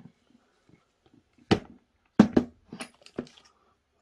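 A few sharp clicks and knocks of a plastic power-tool battery housing being handled and test-fitted, the loudest a little over two seconds in.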